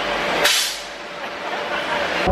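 Compressed-air ball cannon firing: a sudden hiss of released air about half a second in, fading away over about half a second.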